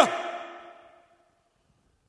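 The end of a man's spoken line, its pitch dropping as it cuts off, with a reverb tail that fades away over about a second into silence.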